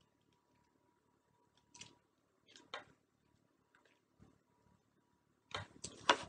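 Near silence with a few faint mouth clicks and smacks from someone chewing fresh sour tamarind pulp, and a short cluster of louder clicks near the end.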